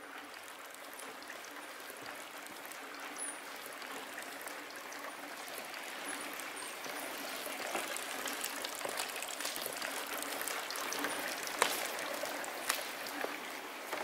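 Theatre audience applauding softly: a dense patter of many hands clapping that grows slowly louder, with a few sharper individual claps near the end.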